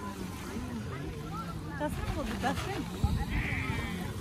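Voices of people talking and calling in the background, with no clear words, over a steady low rumble. A thump sounds about three seconds in.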